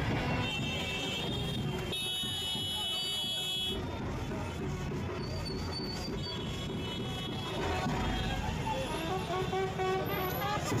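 Street procession din: a marching band's drum and instruments mixed with crowd noise, cut through by a long, high-pitched toot lasting about three seconds near the start and a shorter one later.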